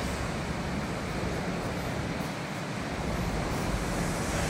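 Steady background noise of a factory workshop: an even hiss with a low rumble beneath it.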